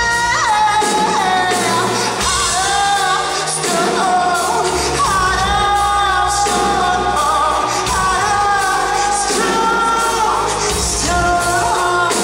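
Male lead vocalist singing a pop ballad live into a handheld microphone over a full band, holding long notes with a wavering vibrato while the drums and bass keep the beat.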